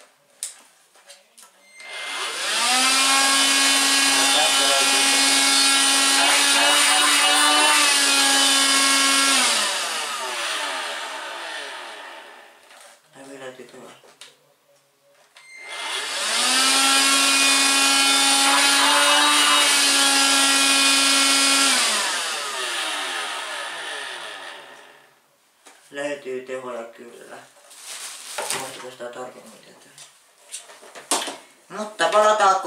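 Stick vacuum cleaner's handheld unit switched on twice. Each time its motor rises to a steady, high-pitched whine, runs for about seven seconds, then is switched off and winds down over a few seconds. Short clicks and handling noises of the plastic body follow near the end.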